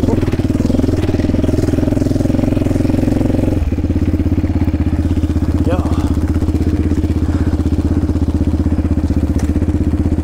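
Yamaha Raptor 700R's single-cylinder four-stroke engine running under way on a sandy trail, then dropping off the throttle to a steady, evenly pulsing idle about three and a half seconds in as the quad stops.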